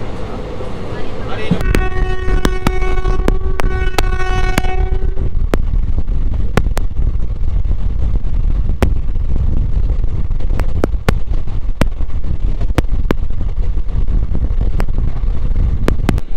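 Passenger train running: a train horn sounds one steady note for about three seconds near the start, over the steady low rumble of the moving coaches. Sharp clicks come at uneven intervals, about one a second, as the wheels cross rail joints.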